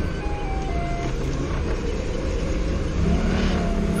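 Doosan 4.5-ton forklift engine running steadily, heard from inside the cab as a low rumble. About three seconds in, a steadier pitched hum joins it.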